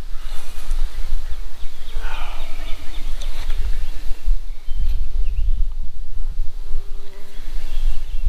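Honey bees buzzing around a frame lifted from the hive, with a steadier buzz close by in the second half, over a constant low rumble.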